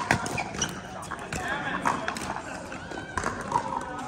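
Pickleball paddles hitting the plastic ball: a few sharp pops a second or more apart, over a murmur of people's voices from the surrounding courts.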